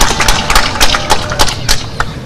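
Scattered sharp hand claps, about three or four a second at uneven spacing, over a steady background hiss of crowd noise.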